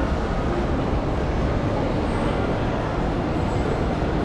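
Steady low rumble of a shopping centre's indoor ambience, with no clear voices or music.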